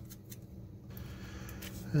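A few faint, light clicks from fingers handling a small brass standoff and screw, over a low steady hum.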